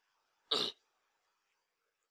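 A man clearing his throat once, a short sound about half a second in.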